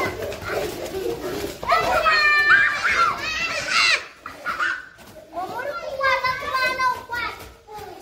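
Young children's high-pitched voices calling out and chattering as they play, loudest about two seconds in and again around six seconds in.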